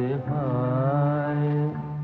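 A man's voice singing one long held note in a slow, sad 1950s Bengali film song, over a steady low sustained accompaniment.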